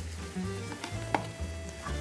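Quiet background music over a faint sizzle from a pan on the stove, with one light click about a second in.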